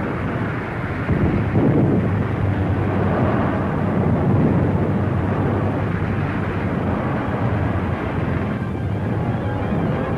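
Dense, steady rumble of heavy military engines on an old film soundtrack, getting louder about a second in, with music starting to come in near the end.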